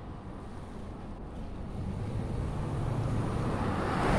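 A passing road vehicle: a steady rumble and hiss that grows louder through the second half, as it draws near.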